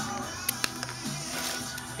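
Background music with a steady run of sustained notes, and a couple of brief soft clicks about half a second in.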